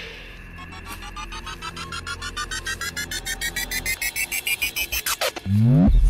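Horror sound effect: a string of beeps that climb in pitch and speed up over about five seconds, then a quick falling sweep and a deep, loud boom hit near the end.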